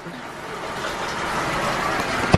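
Shower running: a steady hiss of water spray that grows a little louder.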